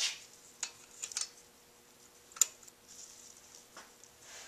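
A handful of light metallic clicks and clinks from a 9mm wrench being handled and fitted onto a valve-adjuster lock nut, the sharpest a little past halfway.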